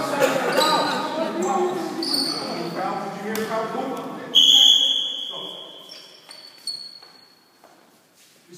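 Basketball game in an echoing sports hall: ball bouncing and shoes squeaking on the court amid voices, then about halfway through one loud referee's whistle blast that stops play. A few short squeaks follow as the hall quietens.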